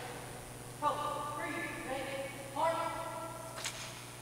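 A voice calling out two long, drawn-out drill commands to a Navy color guard, the second stepping up in pitch, followed by a sharp click near the end.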